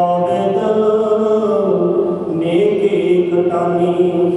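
A man chanting Sikh hymns (Gurbani) into a microphone in a slow melody, holding long notes that slide up and down in pitch; the chant comes in abruptly at the start.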